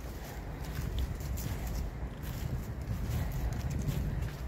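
Footsteps walking over grass and fallen leaves, with a steady low rumble of wind on the microphone.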